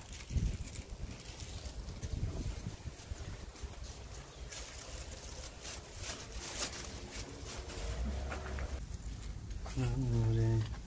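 Faint, indistinct voices over steady outdoor background noise.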